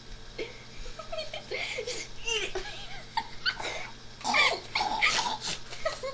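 Boys making wordless high-pitched squeals, whines and laughter, a string of short yelps sliding up and down in pitch that come thicker and louder in the second half. It is the reluctant whining and laughing over being pushed to eat the food.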